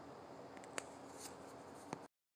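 Faint steady hiss with a low hum, broken by two sharp clicks about a second apart and a few faint ticks between them.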